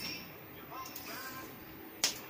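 Soft rustling of a cloth helmet bag as its drawstring is worked loose by hand.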